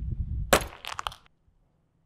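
Heavy footsteps on concrete stairs, then a door handle and latch worked: a sharp click about half a second in, followed by a quick run of metallic clicks and clinks that stops just past a second.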